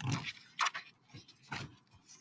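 A page of a picture book being turned: three short paper rustles.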